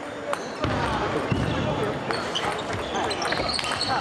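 A table tennis rally: sharp clicks of the ball coming off the bats, one of them a penhold bat with short-pips rubber, and bouncing on the table, with people's voices talking in the background.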